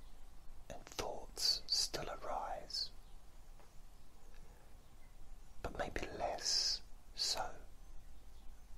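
Whispered speech: two short whispered phrases with sharp hissing s sounds, separated by a few seconds of quiet.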